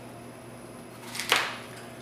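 A knife slicing through an apple and meeting a plastic cutting board once, about a second in: a single short, crisp cut.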